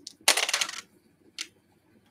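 Two six-sided dice rolled into a dice tray, clattering for about half a second, then one more click.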